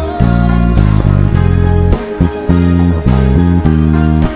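Electric bass guitar played fingerstyle: a line of long held low notes changing about every half second, with short breaks between phrases, over the rest of the song's recording.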